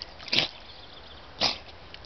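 Staffordshire bull terrier blowing out sharply through its nose twice, its muzzle in the mud, about half a second in and again a second later.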